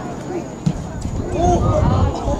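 Shouting voices from players and the sideline during a soccer match, with a single sharp thump of the ball being kicked about two thirds of a second in. The shouting grows louder in the second half.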